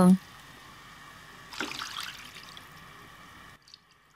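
Water poured in a stream from a ceramic bowl into a pot of chicken curry, a faint splashing that grows a little louder about one and a half seconds in and stops shortly before the end.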